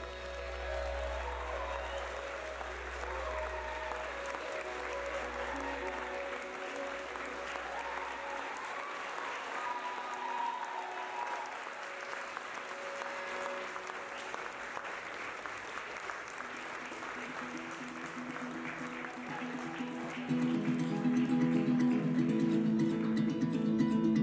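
Wedding guests applauding steadily after the kiss, with background music: a low sustained tone fades out in the first eight seconds, then acoustic guitar strumming comes in and grows louder about twenty seconds in.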